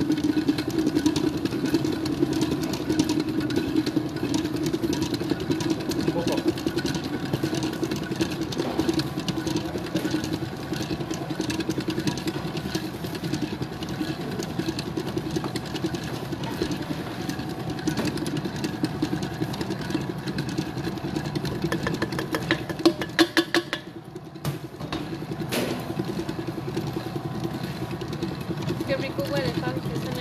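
Electric mixer running steadily, beating cake batter as the flour and baking powder are incorporated, alternating with the liquid. Near the end there are a few clicks, then the motor cuts out briefly and starts again.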